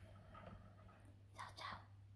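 Near silence with a low steady hum, and a faint short breath from a person about one and a half seconds in.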